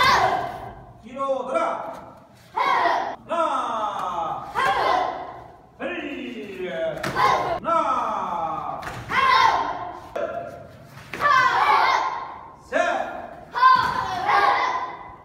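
Children's and adults' voices calling out over thuds of bare feet stepping and stamping on foam mats as the group moves through a taekwondo form, in a hall with some echo.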